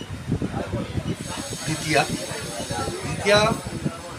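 A man's voice talking, with a steady high-pitched hiss coming in about a second in.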